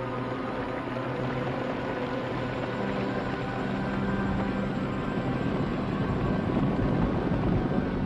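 Low sustained droning from the film's score or sound design: a few held low tones under a rumbling hiss that swells toward the end.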